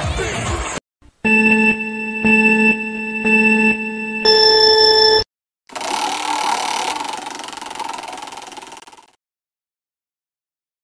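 Background music cuts off, then an electronic ringing tone repeats in quick pulses for about three seconds and ends on a higher held tone. Then an online prize wheel's spin sound effect follows: a dense rattle of clicks that fades out and stops near the end as the wheel comes to rest.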